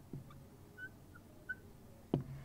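Faint marker pen on a whiteboard: a few short, high squeaks as a word is written.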